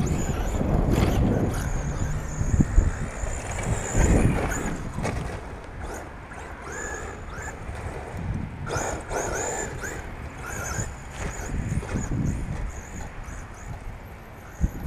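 Wind buffeting the microphone, with the high whine of a radio-controlled 4x4 truck's motor rising and falling in short bursts as it is driven.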